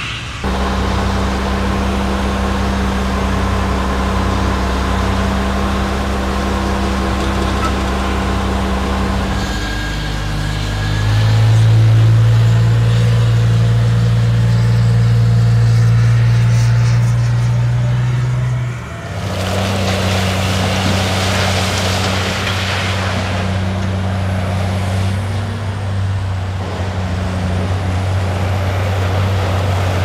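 Diesel engines of large mining haul trucks running at steady speed. The engine note changes abruptly about a third of the way in, runs deeper and louder for several seconds, then changes again, with a rushing noise rising over it for a few seconds.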